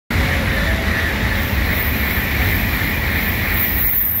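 Shinkansen bullet train passing close by at high speed without stopping: a loud, steady rush of air and wheels on rail.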